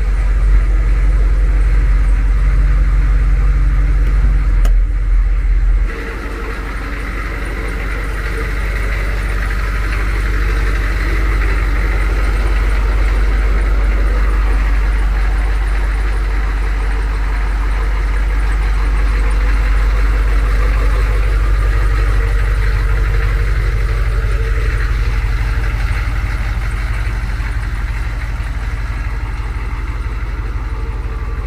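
AM General HMMWV M998's 6.2-litre diesel V8 idling steadily, still cold from a fresh start. The rumble is heavier and louder for about the first six seconds, then suddenly lighter and a little quieter as the sound is heard from outside the truck.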